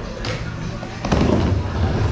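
Skateboard on a wooden bowl: a sharp clack about a second in as the board drops in, then the rumble of its wheels rolling across the wood.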